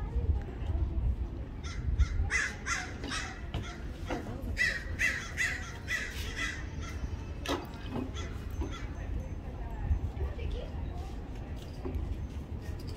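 Harsh, evenly repeated animal calls in two runs: a short series about two seconds in, then a longer series of about six calls from about four and a half seconds in. Under them runs a steady low rumble.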